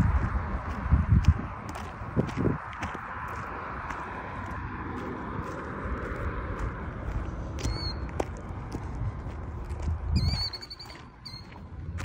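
Outdoor roadside noise with low rumble from wind on the microphone, loudest in the first second or two as a passing car fades. A bird gives high, wavering chirps about eight seconds in and again around ten seconds.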